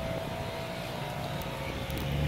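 Steady low background rumble with a faint held tone over it.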